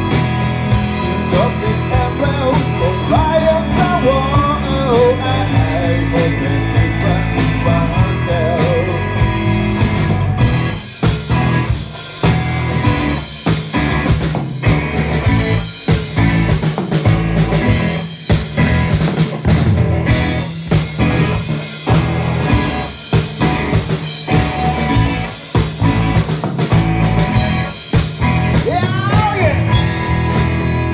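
Live rock band playing with electric guitars, bass, keyboard and drum kit, a wavering lead line riding over it during the first ten seconds. From about ten seconds in the band plays in short stop-start stabs with brief gaps between them.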